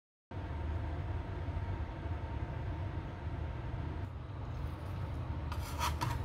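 Steady low room rumble, then near the end a short crunching burst as tin snips begin cutting into a copper-clad circuit board.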